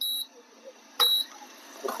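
Induction cooktop's control-panel buzzer giving two short, high beeps about a second apart, part of a steady once-a-second beeping. This is typical of an induction cooktop switched on with no vessel on the plate.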